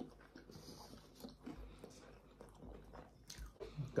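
Faint chewing of a chicken burger, with soft scattered mouth clicks.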